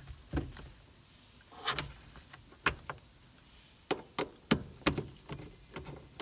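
Hard plastic clicks and knocks from a Toyota Tacoma sun visor and its pivot bracket being pushed and seated into the roof-liner mount, a series of short, irregularly spaced snaps.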